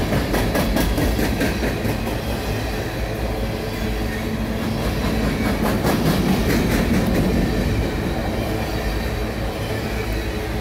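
Open-top freight cars of a passing train rolling by close at hand: a steady heavy rumble of steel wheels on rail, with quick runs of clicking as wheels cross rail joints near the start and again about halfway through.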